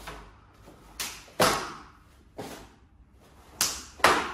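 Taekwondo uniform (dobok) snapping sharply with each punch and kick of a poomsae form: about six crisp cracks, some in quick pairs, the loudest about a second and a half in and at the very end.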